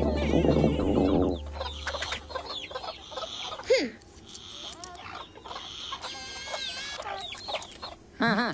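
Cartoon soundtrack: music trailing off in the first second or so, then a hen clucking and squawking, mixed with short chirps and sliding cartoon sound effects.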